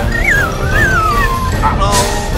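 Cartoon sound effect of an inflatable pool ring losing air. A wavering squeal falls steadily in pitch, and a short burst of air hiss comes near the end, all over background music.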